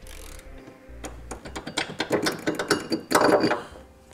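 Socket ratchet clicking rapidly as a 21 mm socket spins a truck's cab body-mount bolt loose, with a louder metallic clatter a little after three seconds in.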